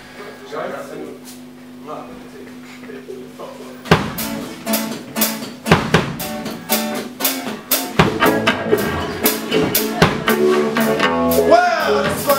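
A live ska band starting a song: a few quiet seconds with a steady low hum and faint talk, then drum kit, bass guitar and acoustic guitar come in together about four seconds in and keep a busy beat.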